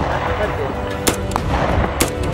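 Gunshots from an AR-15-style semi-automatic rifle: a sharp shot about a second in, a fainter crack just after it, and another shot at the end.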